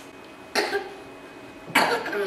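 A person coughing twice, about a second apart, the second cough louder.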